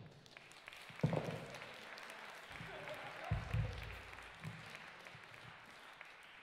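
Audience applause: a dense patter of clapping that fades towards the end. There is a low thud about a second in and a heavier low boom about three and a half seconds in.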